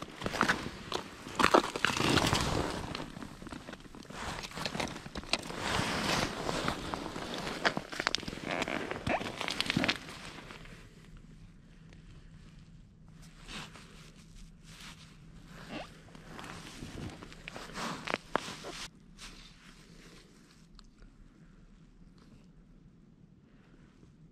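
Close rustling and crunching as an ice angler shifts on the ice and handles his rod and gear, busy and fairly loud for about the first ten seconds, then much quieter with scattered clicks.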